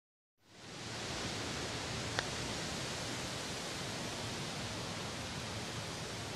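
Steady outdoor background noise, an even rushing hiss, fading in after a moment of silence at the start. One short, sharp tick comes about two seconds in.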